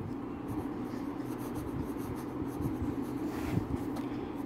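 Ballpoint pen writing in cursive on ruled notebook paper: a soft scratching of the tip on the page, with small ticks as the strokes change, over a steady low hum.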